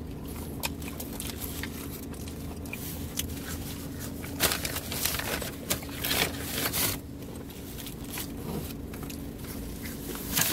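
A paper fast-food bag and its wrappers rustle and crinkle as a hand reaches in, in two louder bursts a little before and after the middle. A steady low hum and scattered small crackles lie underneath.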